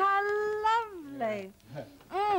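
Speech only: a woman's drawn-out exclamation "How…", held on one high pitch for about a second and then falling away.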